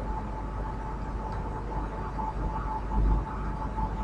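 Room tone of a lecture hall heard through the microphone and PA: a steady low hum with a thin steady tone above it, and a soft low bump about three seconds in.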